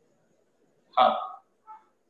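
A man's voice saying one short, clipped word about a second in, with near silence around it.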